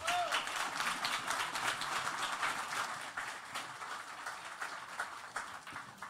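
Audience applauding, gradually dying away over a few seconds.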